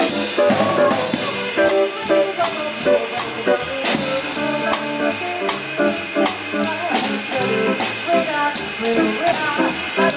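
Live jazz quartet playing: a drum kit with frequent sharp hits over upright double bass and archtop guitar, with a woman singing into the microphone.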